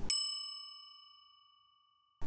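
A single bright metallic ding, a bell-like transition sound effect marking a section title card. It strikes once and rings away, the higher overtones fading within half a second and a lower tone lingering faintly.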